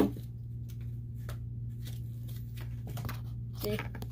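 Toy packaging being handled: a sharp click at the start, then a few soft taps and rustles over a steady low hum.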